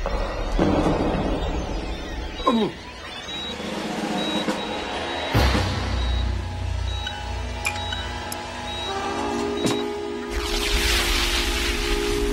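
Film score music with sound effects: a falling swoop about two and a half seconds in, a sharp hit followed by a low rumble about five seconds in, and a swelling hiss near the end over held chords.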